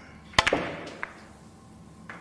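Cue striking the cue ball, and the large white Russian pyramid balls clacking together: a sharp double click just under half a second in, then one fainter click about a second in.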